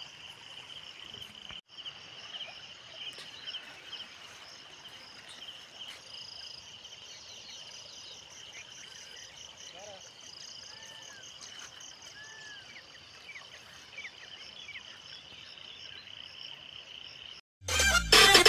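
Faint, steady chirring of insects, with a few short bird calls about two-thirds of the way in. Loud music cuts in at the very end.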